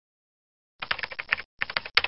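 Computer keyboard typing: after a short silence, two fast runs of key clicks with a brief pause between, the second ending in a sharper click.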